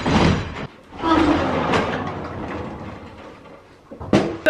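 Sliding barn stall door being rolled along its track: a short scrape, then a longer rolling rumble that fades away.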